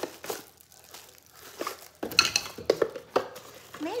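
A set of measuring cups clinking together in crinkling plastic wrapping as they are handled out of a box, with a cluster of sharp clatters about halfway through.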